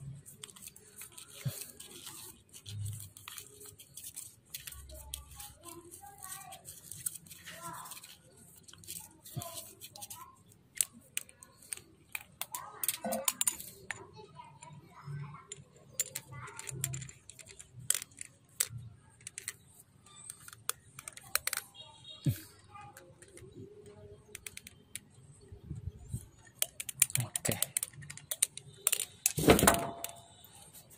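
Hand-handling of plumbing parts: thread-seal tape pulled off its roll and wound onto a plastic pipe fitting, then the fitting worked against a check valve, giving a string of small clicks and rustles. A louder knock comes near the end.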